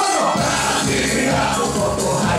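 Loud live music from a performer on a microphone over a DJ's beat, with crowd noise; the bass comes in about half a second in.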